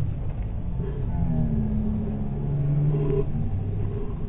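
Low, steady rumble of a motor vehicle's engine with outdoor street noise; its hum swells from about a second in and is loudest near the three-second mark.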